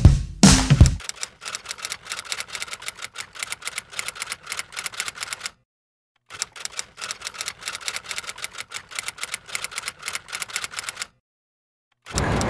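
Rapid typewriter-style keystroke clicks, the typing effect for on-screen text, in two runs of about four to five seconds each with a short silent pause between them. A loud rock music track cuts off about a second in.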